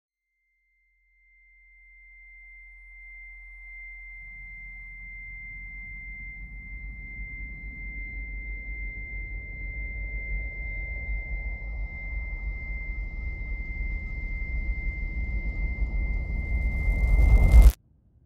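Horror-trailer sound design: a single steady high-pitched tone held throughout. Under it a deep rumble starts about a second and a half in and swells steadily louder with a rising rush of noise, and all of it cuts off abruptly just before the end.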